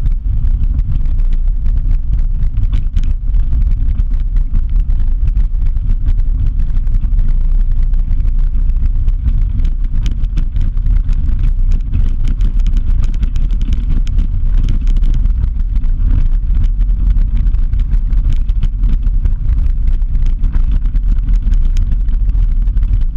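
Steady rumble and wind buffeting on a vehicle-mounted camera travelling fast down a gravel dirt road, with a scattered crackle of gravel and bumps throughout.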